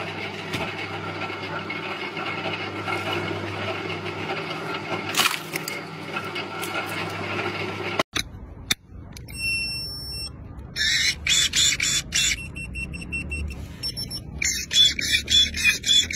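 Motor-driven crank log splitter running with a steady hum, with a sharp crack about five seconds in as the wedge splits firewood. After a sudden cut, a few brief high beeps, then repeated high-pitched chirping calls.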